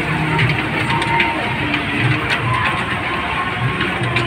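Continuous fairground din: a steady noisy hum with the faint chatter of a crowd mixed in.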